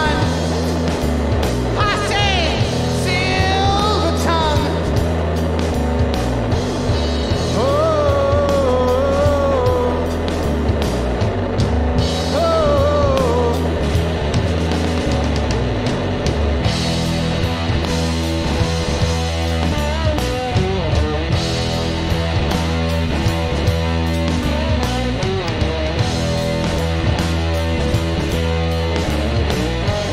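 Live rock band playing loudly on electric guitar, bass and drums. A sung melody runs through roughly the first half, and after that the band plays on without vocals.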